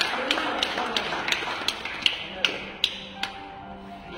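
Sharp rhythmic taps, about four a second, over soft background music; the taps slow and stop about three seconds in, leaving a few held notes.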